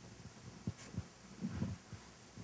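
Several soft, low thumps in a quiet room, most of them in the second half.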